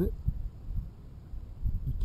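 Faint, uneven low rumble of wind on the microphone in a pause between a man's words.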